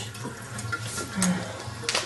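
Steady water noise in a bathtub while a cat is being bathed, with a short sharp knock near the end.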